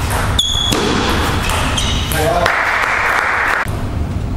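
Table tennis ball being played in a short rally: sharp, ringing ball clicks off bat and table, one about half a second in and a couple more around the two-second mark, over a loud, steady hall background noise.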